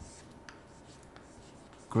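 Chalk writing on a chalkboard: faint scratching with a few light taps about every half second. A man's voice starts at the very end.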